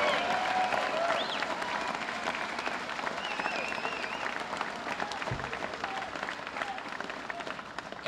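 Audience applauding, the clapping slowly dying away, with a few scattered voices among it.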